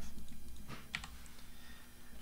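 A few scattered keystrokes on a computer keyboard, typing an equation.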